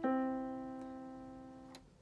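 Electronic keyboard in a piano voice: a single low note, the C, struck once and fading away over nearly two seconds. It is the second, lower half of a major third played E then C, the 'ding dong' of a doorbell.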